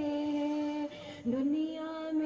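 A girl singing unaccompanied into a microphone, holding long steady notes. She pauses briefly about a second in, then slides up into the next held note.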